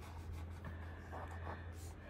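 Fingertips rubbing and brushing across the dried, glue-sealed paper photo transfers on a canvas, a faint scratchy sound with a few soft strokes, over a low steady hum.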